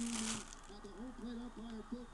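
Faint, distant speech from a television broadcast of a baseball game playing in the background, with a brief crinkle of plastic wrap at the start and a few light clicks.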